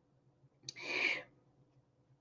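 A single short, breathy breath lasting about half a second, with a small mouth click at its start, under a faint steady room hum.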